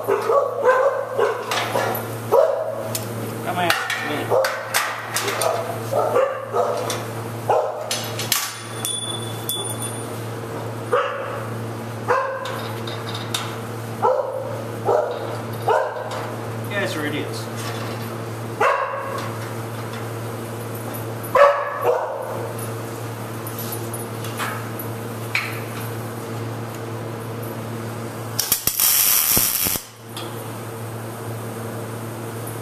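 A dog barking and yipping in short bursts through the first half, over a steady hum. Near the end comes a loud crackle of a welding arc, about a second and a half long, as a tack weld is laid on a steel suspension bracket.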